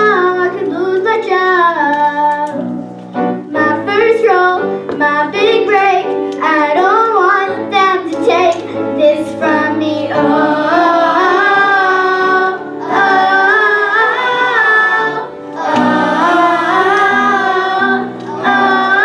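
Girls singing a musical-theatre song with instrumental accompaniment. About ten seconds in, the melody moves to longer held notes.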